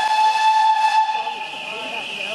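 Steam locomotive whistle: one long, steady blast that cuts off shortly before the end.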